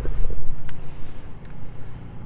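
Low rumble of wind and handling noise on the microphone, loudest in the first half second and easing off, with a faint click near the middle.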